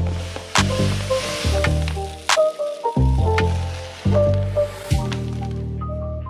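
Background music with a repeating bass line, over a granular hiss of Calitti Strong bentonite clumping cat litter pouring from its bag into a plastic litter box. The pouring hiss fades out shortly before the end.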